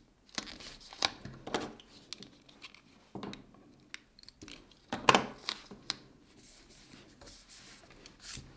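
Paper planner stickers being handled, peeled and pressed down on the page: irregular rustling and crackling, the loudest burst about five seconds in.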